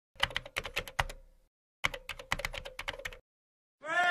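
Typing sound effect: two quick runs of keystroke clicks, each a little over a second long, with a short gap between. Just before the end a loud burst of crowd noise starts.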